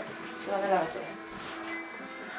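A soft voice: a short murmured sound about half a second in, then a held low hum in the second half.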